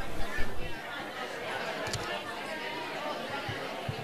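Indistinct chatter of several people in a large hall, louder in the first second, with a few low knocks.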